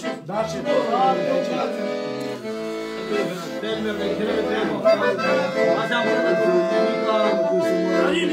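Piano accordion played live, held chord notes sounding under a moving melody, with men's voices mixed in.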